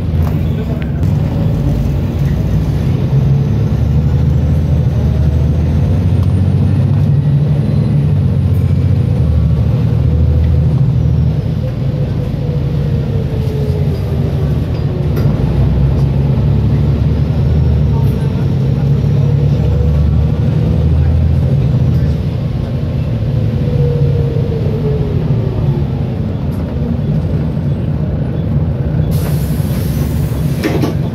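Volvo B7TL double-decker bus heard from inside the saloon: its diesel engine runs steadily under way, with a transmission whine that rises and falls as the bus speeds up and slows. The engine note drops about two-thirds of the way through, and a short hiss near the end is typical of the air brakes.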